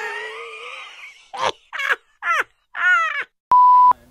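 A single steady electronic beep, about half a second long, near the end. Before it come four short voice-like sounds, and at the start about a second of noisy sound with shifting tones.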